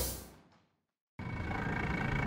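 Background music fading out into a moment of dead silence, then about a second in a boat's outboard motor idling starts abruptly, a steady low rumble.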